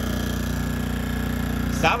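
A-iPower SC2000i portable inverter generator running steadily, a quiet, even engine hum. A spoken word cuts in near the end.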